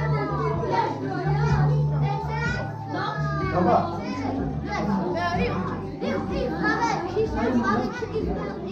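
Many children's voices chattering and calling out over one another, with background music playing underneath.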